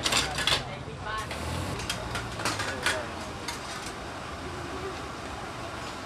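Street-food stall cooking: sharp metal clanks of ladles and spatulas against pots and woks, loudest in the first half-second and again about two to three seconds in, over a steady background hum and people's voices.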